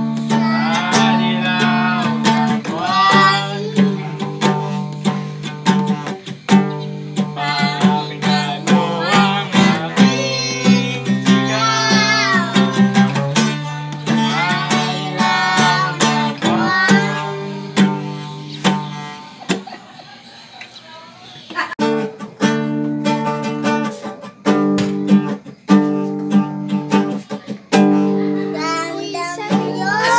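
Acoustic guitar strummed in steady chords while a young boy sings along. About two-thirds of the way through the playing drops away briefly, then the strumming resumes.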